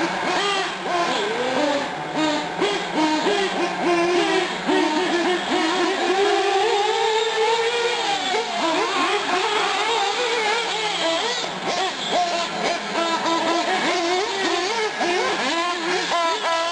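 Several small nitro engines of 1/8-scale R/C buggies and trucks running on the track at once, their high-pitched whine rising and falling quickly with the throttle. Near the middle one engine holds a long, smooth rise and fall in pitch.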